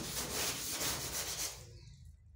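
A hand broom scrubbing a wet door panel in quick repeated strokes, which fade out near the end.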